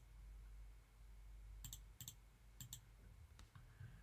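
Faint computer mouse clicks, about four short clicks in the second half, as lines are picked one after another on screen.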